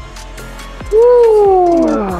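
A man's long, loud groan of effort at the end of a heavy single-arm cable pulldown. It starts about a second in, high, and slides down in pitch over about a second.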